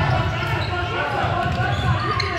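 Basketball being dribbled on a hardwood gym court during play, with indistinct calls from players and spectators.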